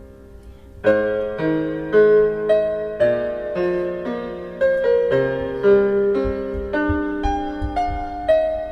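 Background piano music: a held chord fades out, then from about a second in a melody of notes struck about twice a second.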